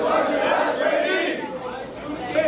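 Raised voices over crowd chatter, with no clear words, falling away about a second and a half in.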